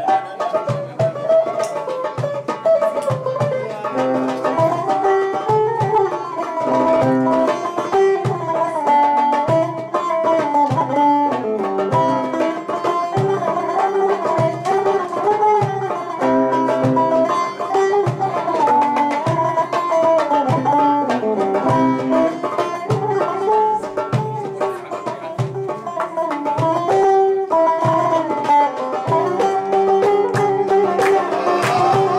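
Biziq, a Kurdish long-necked lute, playing a plucked melody of moving, repeated notes.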